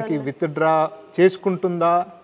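Crickets keeping up a steady high-pitched chirr under a man talking.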